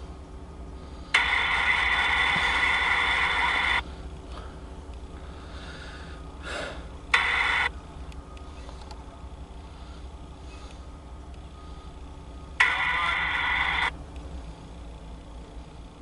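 Three bursts of radio static from a railroad scanner, each cutting in and out abruptly: about two and a half seconds, then half a second, then just over a second long. Underneath is the low steady rumble of an idling CSX diesel locomotive.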